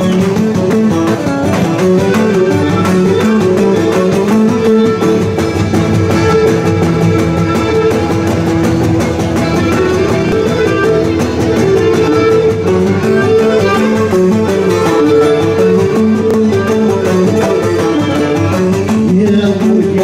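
Live Cretan folk dance music playing continuously: a bowed string melody over strummed, plucked string accompaniment.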